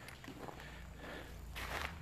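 Faint footsteps of a person walking over a dusty factory floor strewn with spilled micro silica powder and debris, with a slightly louder scuff near the end.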